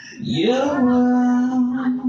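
A rock singer's voice swooping up into one long held note, a howl-like wail with the band stopped.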